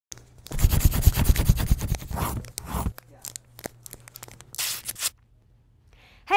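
Paper crumpling and tearing: a dense crackle for about two and a half seconds, then a few scattered crackles and one more short rustle about a second before the end.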